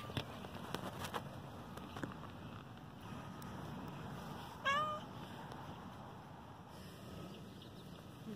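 A cat gives one short meow about halfway through, rising in pitch and then levelling off, over faint background hiss.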